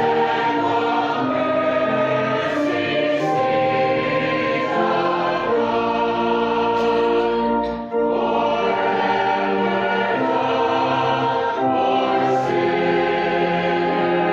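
A hymn sung by many voices in long held notes, with a short break about eight seconds in.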